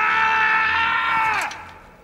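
A man's long cry of pain, held on one pitch and fading out about one and a half seconds in: the actor's real scream after breaking two toes by kicking a helmet.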